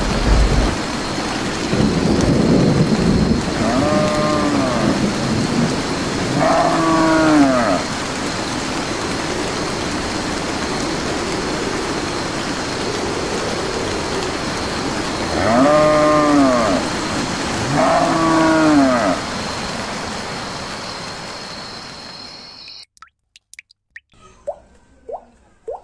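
Steady heavy rain with a low rumble of thunder in the first few seconds, and a cow mooing four times in two pairs. The rain fades away and cuts off shortly before the end.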